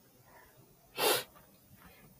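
A person's single short, sharp burst of breath about a second in, against a quiet room.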